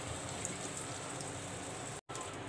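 Vegetables frying in oil and butter in a pan: a steady, even sizzle.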